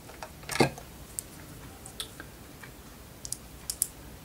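A screwdriver driving a small screw into an LED cluster board in a traffic-light module: scattered light clicks and ticks, with one louder knock about half a second in.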